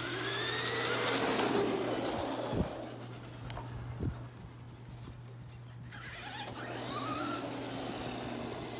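Two Traxxas 2WD RC trucks launching from a standing start. Their electric motors and gears give a loud rising whine over tyre noise on asphalt, fading as they drive away, with a couple of short knocks in the middle. The whine rises again near the end.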